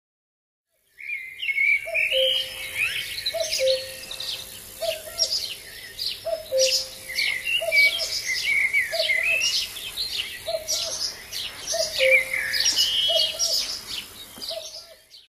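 Birdsong starting about a second in: several birds chirping and warbling in quick high phrases, with a lower short note repeating about every second and a half underneath.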